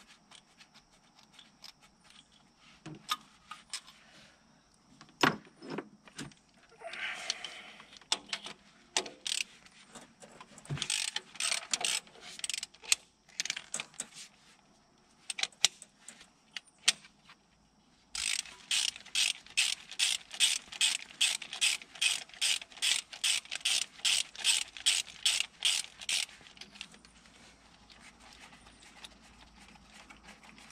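Hand ratchet clicking as bolts are backed out on a 5.9 Cummins diesel engine. Scattered clicks and short runs come first, then a steady run of about four clicks a second lasting roughly eight seconds, past the middle.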